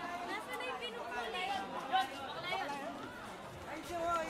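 Several teenagers chattering and talking over one another.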